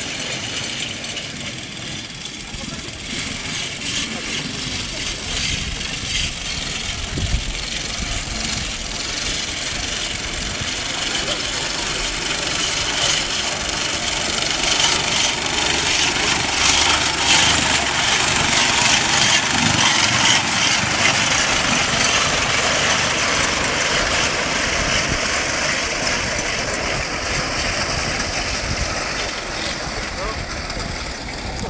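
Horse-drawn mower with a reciprocating cutter bar clattering as it cuts standing grain. It grows louder as the team approaches, is loudest about halfway through, then fades.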